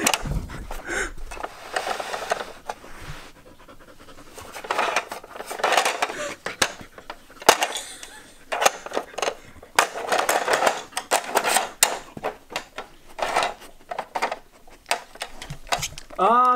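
Samoyed panting heavily in irregular bursts close to the microphone, with several sharp plastic clicks and knocks as it paws and noses at a Trixie plastic puzzle board.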